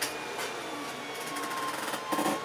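Handling noise as a paper booklet is reached for and picked up: a couple of brief rustles, then a rapid fine ticking rustle in the second second.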